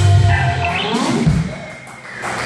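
Live band of electric guitar, drums and keyboard finishing a song: the held notes break off and ring away, with a low drum thump about halfway through as the sound fades.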